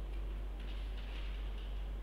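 Room tone: a steady low hum with a few faint ticks, and no speech.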